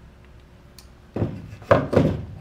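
Handling noise from a crimping tool and wiring. It is quiet for about a second, then a louder run of rubbing and knocks comes as the crimping pliers are drawn off the crimped butt connector and put aside.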